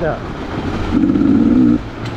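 Beta enduro dirt bike engine running under way, with a short, louder burst of throttle about halfway through that lasts under a second.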